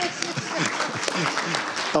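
Audience applauding, a dense patter of many hands clapping, with a few voices mixed in.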